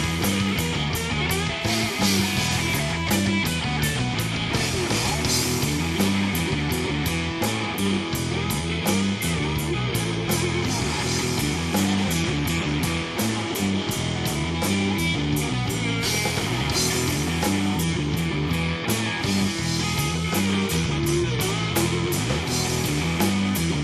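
Live rock band playing an instrumental passage on electric guitars and a drum kit, with steady cymbal hits keeping the beat, about four a second.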